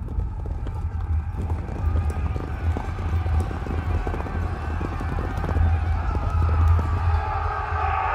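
Horses' hooves clip-clopping, many irregular hoof falls over a low rumble, with background music; it grows a little louder in the second half.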